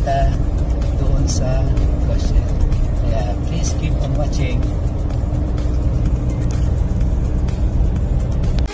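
Steady low rumble of road and engine noise inside a moving car's cabin at expressway speed.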